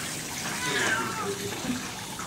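Water from a handheld grooming-tub sprayer running steadily onto a cat's coat, the nozzle held close against the skin to keep the hiss low. A short falling voice-like call comes about a second in.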